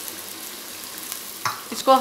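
Freshly added chopped onion and garlic sizzling steadily in hot oil in a frying pan, at the start of frying to a light brown.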